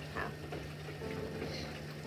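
A quiet gap in conversation: a faint steady low hum with soft held tones that shift pitch in the background, and one small soft sound about a quarter second in.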